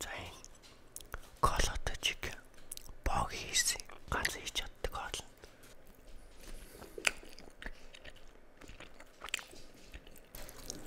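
Close-miked eating: wet biting and chewing of a glazed chicken piece, with the loudest bites and mouth noises in the first half and a sharp click about 7 seconds in.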